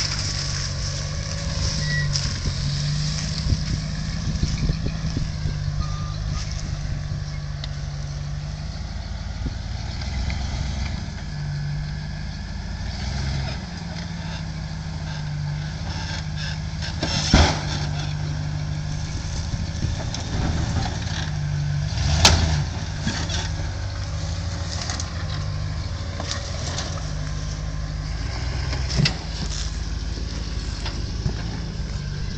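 Willys pickup rock crawler's engine running at low speed as the truck crawls over rocks, its pitch stepping up and down with the throttle. Two sharp knocks stand out, one a little past the middle and one about five seconds later.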